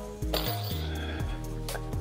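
Background music with held notes, with a few light clinks, from the small disc flicked on the tabletop pitch.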